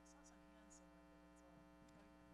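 Near silence: a steady electrical mains hum from the recording or sound system, with faint murmurs in the room.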